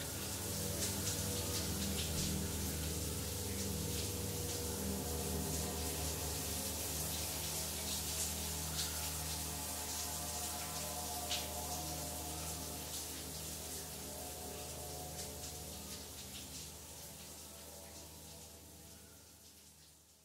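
A shower running, a steady hiss of spray with scattered small splashes. Under it is a low, droning ambient music track with slowly pulsing tones. Both fade out over the last several seconds.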